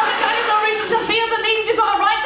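A woman's voice rapping into a handheld stage microphone.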